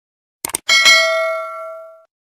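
Subscribe-button animation sound effect: a quick double mouse click about half a second in, then a single bright bell ding that rings out and fades over a little more than a second.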